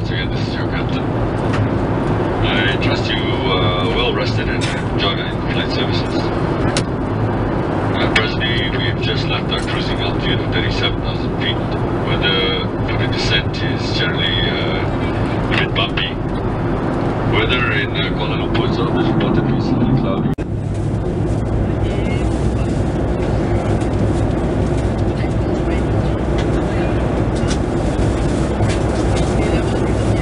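Steady drone of engines and airflow inside a Boeing 737-800's cabin in flight. Voices are heard over it for the first two-thirds and stop abruptly, leaving only the drone.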